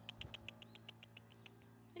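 Near silence: faint quick ticking, about six ticks a second, over a low steady hum.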